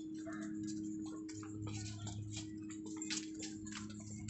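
Footsteps ticking on brick paving, a few sharp clicks a second at an uneven pace, over a steady low hum.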